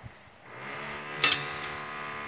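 A sharp metallic clink with a short ring, as of stainless-steel flue pipes knocking together, about halfway through, over a steady electrical hum that sets in about half a second in.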